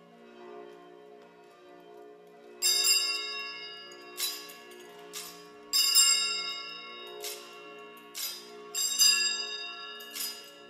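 Small altar bells (Sanctus bells) rung at the elevation of the Host, in a series of bright ringing strikes starting a few seconds in, each ringing on briefly. Beneath them a steady held chord of low tones sounds throughout.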